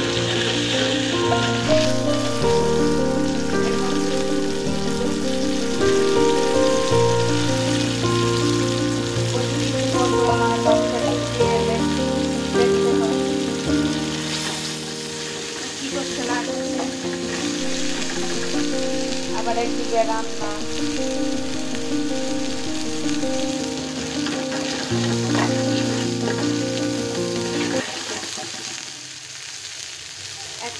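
Sliced onions sizzling as they fry in oil in an aluminium pot, with a metal spatula stirring and scraping through them. Background music with held chords plays over the frying and stops near the end.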